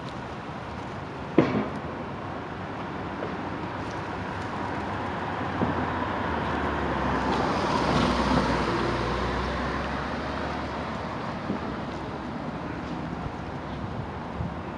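Street traffic noise: a steady background hum with one vehicle passing, swelling to its loudest about eight seconds in and then fading. A single sharp click sounds about a second in.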